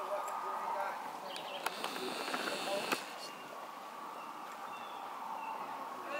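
Distant voices of reenactors calling out across the field, with two sharp cracks about a second apart near the middle.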